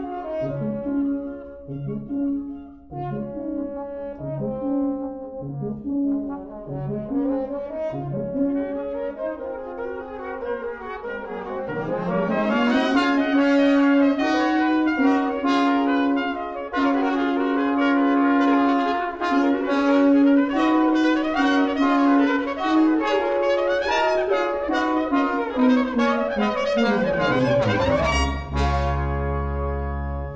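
Brass quintet of two trumpets, French horn, trombone and tuba playing. For the first dozen seconds short repeated low notes move under the upper voices. Then the music grows louder, with one long held note beneath busy higher lines, and near the end it sweeps down into a loud low note.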